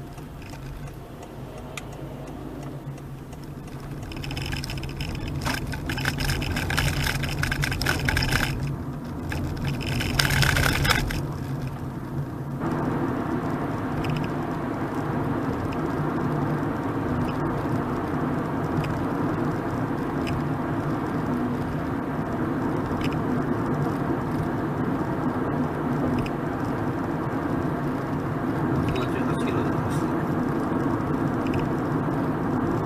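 Road and tyre noise heard inside a Honda Freed Hybrid's cabin as it drives, with a louder, rougher swell between about four and twelve seconds in. From about twelve seconds in it settles into a steady, louder rumble as the car cruises at speed on an expressway.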